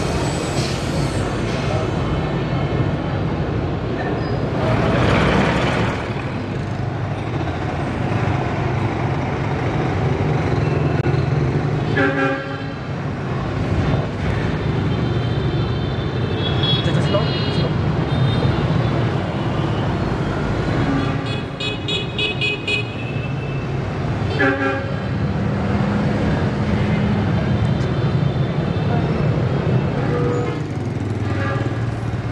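Busy street traffic: a steady hum of engines with vehicle horns sounding several times.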